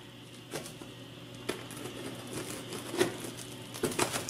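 Scissors cutting into the plastic stretch wrap and tape of a cardboard parcel: faint crinkling with a few light clicks.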